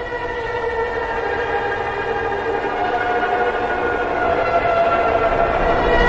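Phonk track intro: a held electronic chord of several steady tones, swelling slowly louder, with no beat under it.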